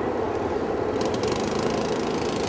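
Small four-wheeler (ATV) engine running steadily at a constant pitch.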